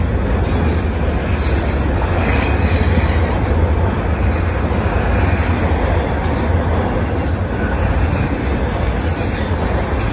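Intermodal freight cars carrying trailers and containers rolling past: a steady, loud rumble of steel wheels on the rails.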